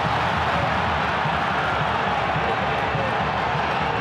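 Steady noise of a large stadium crowd at a soccer match.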